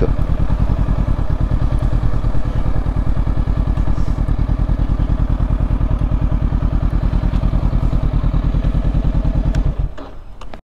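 Honda CB500X's parallel-twin engine running at low speed with an even, steady pulse as the bike rolls to a stop at the kerb; the sound stops suddenly near the end.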